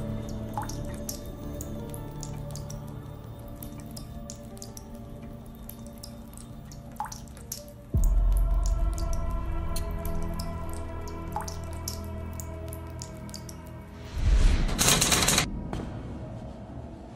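Sombre film score with sustained low tones over water dripping steadily. A deep boom hits about halfway through, and a loud rushing burst sweeps in near the end.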